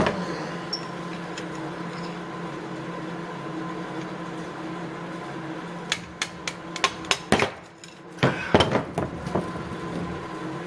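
Hammer tapping a metal punch to drive a piston wrist pin out through the rear access hole of a Subaru 2.5 SOHC boxer short block: a run of sharp metallic taps about six seconds in, irregularly spaced over roughly three seconds, after a steady hum.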